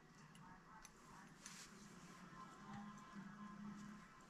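Near silence: room tone with faint, scattered ticks of a loom hook and yarn loops being worked on the pegs of a round knitting loom, and a faint low hum in the second half.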